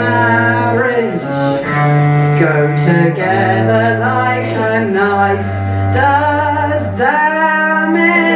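Cello bowed in long, held low notes that change pitch every second or two, with a woman singing over it.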